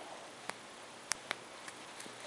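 A few faint, sharp clicks of a wire head pin and round-nose pliers being handled as the wire is wrapped around itself, over a quiet room background.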